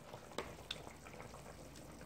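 Faint clicks and light scraping of a metal spoon against a plastic container and bowl as cooked rice is scooped and put into stew, with two small clicks about half a second in.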